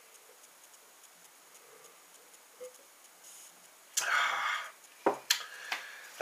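A glass of lager being drained, with faint swallows. About four seconds in comes a loud breathy exhale, and a second later two sharp knocks as the glass is set down.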